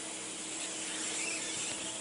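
A steady hiss with a faint low hum beneath it, unchanging throughout.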